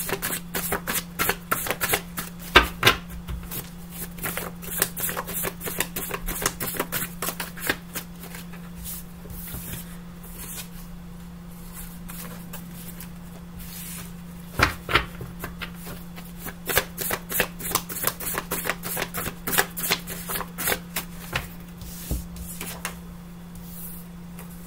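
A deck of tarot cards being shuffled by hand: quick runs of flicking card clicks for several seconds, a quieter pause of a few seconds near the middle, then more shuffling.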